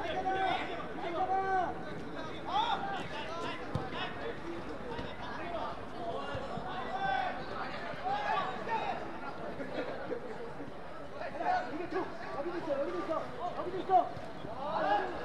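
Players and coaches shouting short calls across a football pitch during play, over a steady background murmur, with the loudest call right at the end.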